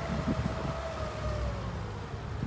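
Pinzgauer 6x6's air-cooled petrol four-cylinder running unevenly under a thin, steady high whine that sinks a little in pitch near the end as it slows. The uneven running is the stutter of an engine that has stood 14 years and still runs on 14-year-old petrol.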